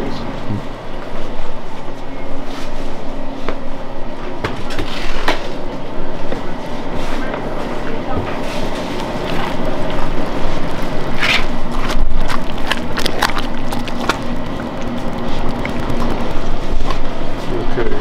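Copper kettle of peanut brittle syrup and raw peanuts boiling on its stove, stirred with a long wooden paddle that scrapes and knocks against the copper. Steady rushing noise with a low hum runs underneath, with scattered clicks and scrapes from the stirring.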